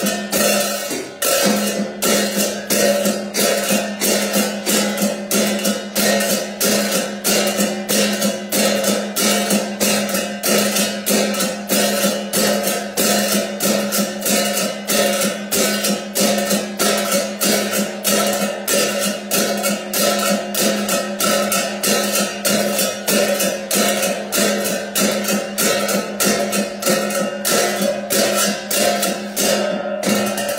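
Ritual music: jingling hand percussion keeps a fast, steady, even beat over a plucked string instrument.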